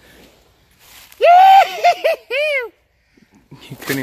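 A loud, high-pitched wavering cry starting about a second in and lasting about a second and a half, ending in a short rise-and-fall.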